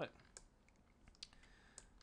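A few faint, spaced-out clicks from operating a computer, with near silence between them.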